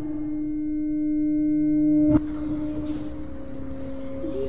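A steady soundtrack drone tone with overtones swells gradually louder for about two seconds, then breaks off at a sharp click. A fainter tone with background hiss carries on after the click.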